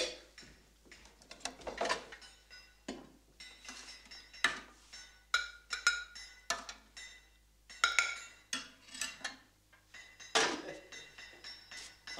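Cutlery and china clinking at a meal table: a fork on a plate and a cup on its saucer, in irregular taps and clinks, some with a short ring.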